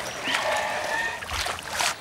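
Water splashing and sloshing as a sea lion swims through a pool, with a dull low thump a little over a second in.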